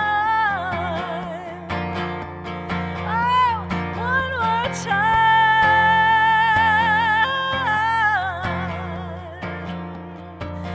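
Woman singing with strummed acoustic guitar: long drawn-out notes with vibrato, a few swooping glides in the middle, then a long steady held note that steps up and slides back down, the voice fading near the end.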